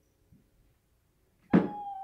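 A person's single cough about a second and a half in, with a short, steady high note sounding alongside it.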